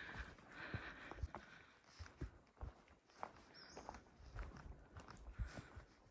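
Faint footsteps of a hiker walking on a soft dirt forest trail, an uneven tread of about two steps a second.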